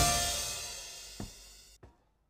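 A band's song ending: the final drum-and-cymbal hit and chord ring out and fade away over about a second and a half, with a couple of faint clicks as it dies out.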